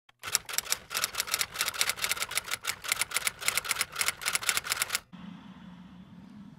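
Rapid, irregular run of sharp mechanical clicks, about eight a second, stopping suddenly about five seconds in. A faint low steady hum follows.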